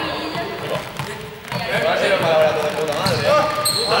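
Small juggling balls bouncing and knocking on a sports-hall floor, echoing in the large hall, over many people talking at once.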